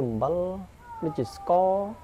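A man speaking in a lecture, with long drawn-out syllables that rise and level off.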